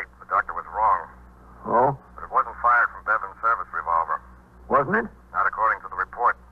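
Dialogue from an old radio drama recording: voices speaking in short phrases, muffled with no treble, over a steady low hum.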